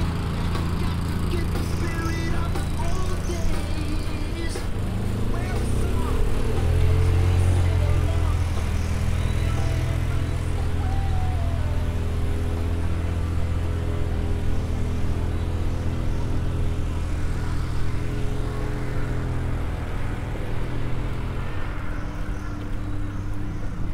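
An engine running steadily at idle, a low even hum that grows louder about six seconds in and then holds, with people talking in the background.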